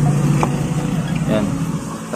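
A steady low hum like a motor or engine running, with one sharp click about a quarter of the way in and a brief bit of voice past the middle.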